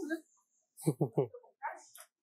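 Three quick yelping barks from an animal about a second in, each sliding down in pitch.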